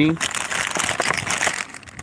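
Clear plastic zip-lock bags crinkling as they are handled, a dense crisp crackle that eases off near the end.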